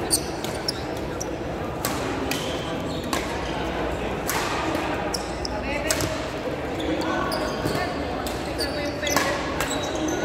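Badminton rally: sharp racket-on-shuttlecock hits at irregular intervals, with a few shoe squeaks on the court floor, over the background chatter of a large echoing hall.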